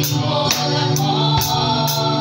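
Live worship music: voices singing a gospel song with band accompaniment, and a drum kit keeping a steady beat of about two hits a second.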